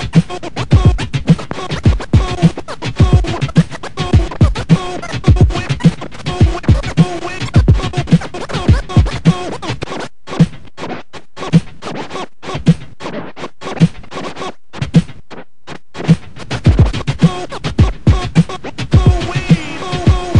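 Turntable scratching of a sample over a hip-hop drum beat, played through M-Audio Torq DJ software from a control record. About ten seconds in, the beat drops out for several seconds and the scratches come as short chopped cuts, then the beat comes back around sixteen seconds.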